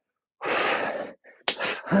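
A man's short, forceful breath out, a hissing rush of air lasting just under a second that starts about half a second in.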